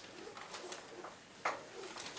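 Chalk tapping and scraping on a chalkboard as an arrow is drawn: a few short, faint strokes, the sharpest about one and a half seconds in.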